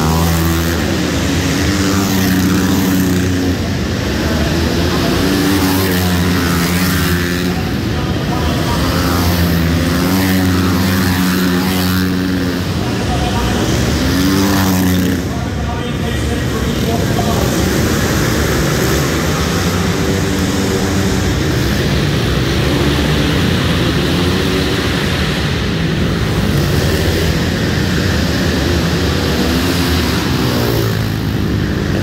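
A pack of 450cc single-cylinder four-stroke flat-track motorcycles racing on an indoor dirt track, engines revving up and down as the bikes pass through the turn, echoing in the large hall.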